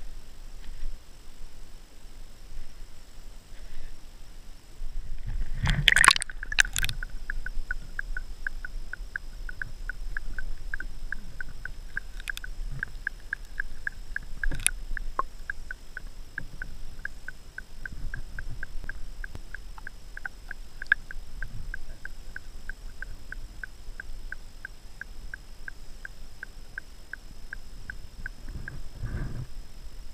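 A GoPro camera plunging into creek water with a splash about six seconds in, then muffled underwater sound with a regular ticking, about three ticks a second, that runs until near the end.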